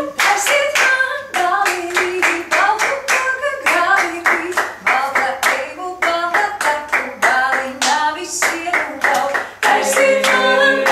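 Six-woman a cappella ensemble clapping a quick, even rhythm with their hands while singing short, moving melodic phrases of a Latvian folk-song arrangement. The claps begin as a held chord breaks off.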